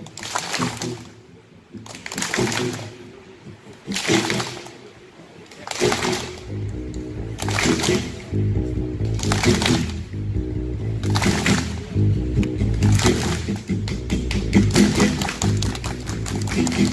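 Live music played through a PA: a short swishing noise repeats about every two seconds, and about six seconds in a band with a steady, rhythmic bass line comes in. Toward the end the audience claps along.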